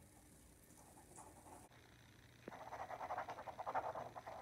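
Near silence, then from about two and a half seconds a boy's faint, quick, strained panting.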